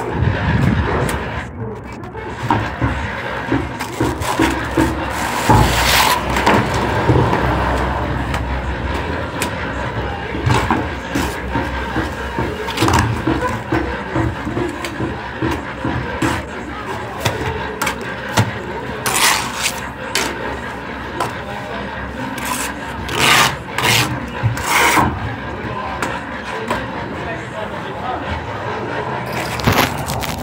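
Hand work on a building site: repeated scraping and rubbing strokes, broken by a few sharp knocks.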